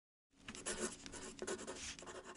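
Pen scratching across paper in quick handwriting strokes, starting about a third of a second in.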